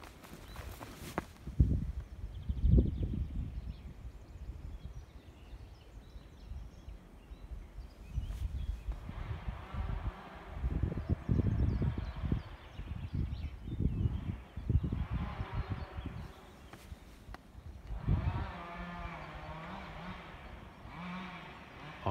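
Handheld phone microphone picking up low thumping rumbles from wind and footsteps through grass. In the second half come several short, wavering pitched sounds.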